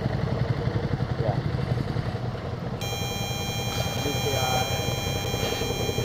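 Motorcycle engine idling with a steady, evenly pulsing low rumble.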